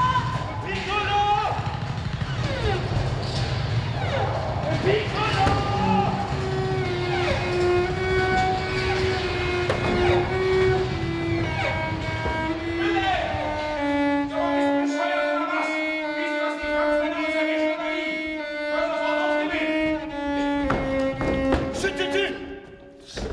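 Slow melody of long, held bowed notes on a cello, over a low rumble that stops about two-thirds of the way through.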